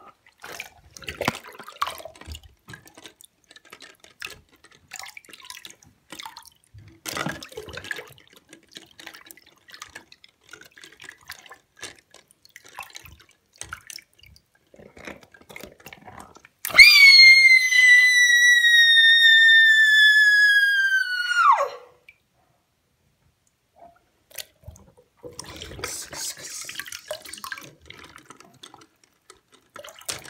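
Light splashing and dripping as a rubber toy shark is moved through water in a basin. About seventeen seconds in comes a loud, high-pitched squeal that sinks slightly in pitch over about five seconds and then drops away sharply.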